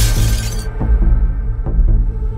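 Glass pane in a door shattering as it is struck: a sudden crash whose bright glass noise dies away within about a second. It sits over loud, low, sustained trailer music that carries on afterwards.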